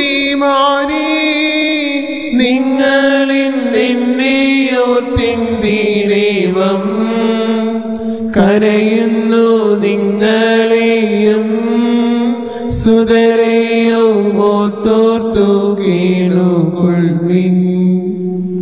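Slow devotional hymn music: a melody of long held notes with vibrato over a steady low drone.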